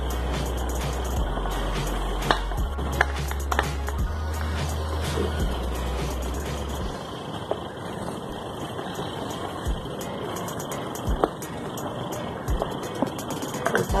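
Wooden spoon scraping sticky, caramel-coated peanuts out of a pan into a baking tray, with a few sharp knocks. Background music plays underneath.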